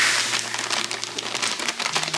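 Dry stuffing bread cubes pouring from a plastic bag into a large glass bowl: a dense rattle of many small impacts with the bag crinkling, loudest at the start and thinning out.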